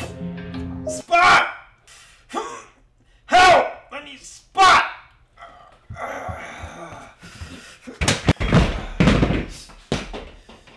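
A man grunting with strain three times while pressing heavy dumbbells on a weight bench, then several thuds as the dumbbells come down.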